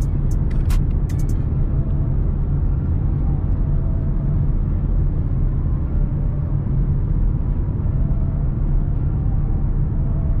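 Steady in-cabin drone of a 2016 Ford Mustang EcoBoost's 2.3-litre turbocharged four-cylinder and its tyres while cruising on the open road, a low, even rumble. There are a few sharp clicks in the first second.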